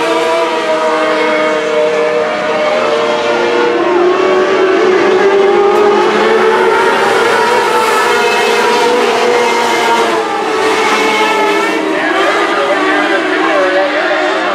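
Several modlite dirt-track race cars running together on the oval, their engines at different pitches rising and falling as the cars circle, a little louder in the middle as cars pass along the front stretch.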